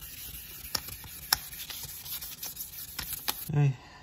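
Fine 1500-grit wet sandpaper rubbed by hand over the aluminium skin of a Muzzy motorcycle silencer: a steady scratchy hiss with a few sharp clicks, stopping abruptly near the end.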